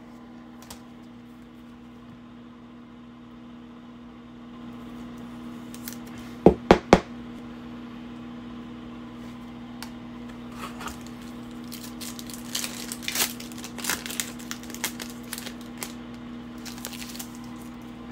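A foil trading-card pack (Panini Optic basketball) crinkling and tearing in the hands as it is opened, in irregular crackles from about ten seconds in. Earlier there are three sharp clicks in quick succession, all over a steady low hum.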